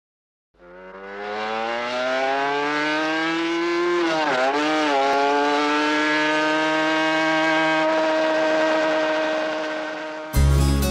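A motorcycle engine accelerating: its note climbs steadily for about four seconds, wavers briefly, then holds one high steady pitch and slowly fades near the end.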